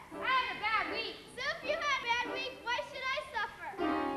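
Young children's high-pitched voices, chattering and calling out with no clear words.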